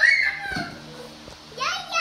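A young child's high-pitched, excited shouts of "yeah, yeah": one call at the start and another near the end.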